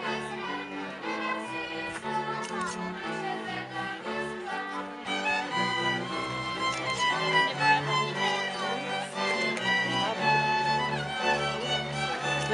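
Folk string band of violins and a double bass playing a lively tune, the bass line moving underneath the fiddles. The music grows fuller and a little louder about five seconds in.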